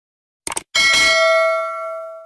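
A quick mouse-click sound effect, then a single bell ding about three-quarters of a second in that rings on and slowly fades: the stock click-and-notification-bell sound of a YouTube subscribe animation.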